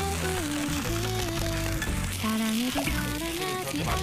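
Pork sizzling in a wire grill basket over a fire, heard under background music with a melody and a steady bass line.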